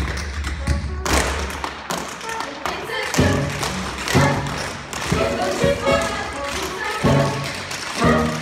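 Tap shoes striking the stage floor in a fast, busy tap-dance routine by a group of dancers, over an accompanying show tune.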